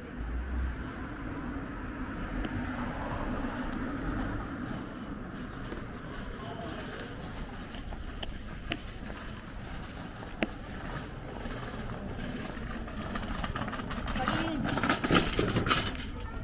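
Busy street ambience at a pedestrian crossing: traffic running nearby and passers-by talking, with a few isolated clicks and a louder rush of noise near the end.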